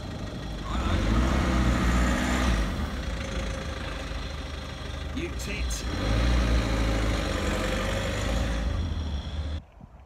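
Small panel van's engine pulling away from a junction: it revs up twice, easing off in between, then cuts off abruptly near the end.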